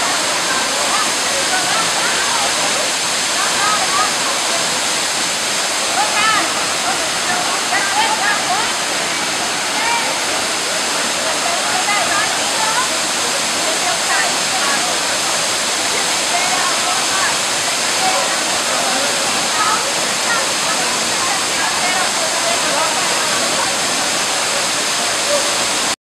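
Steady rush of a waterfall and its stream, with indistinct voices of a group of people chattering and calling over it.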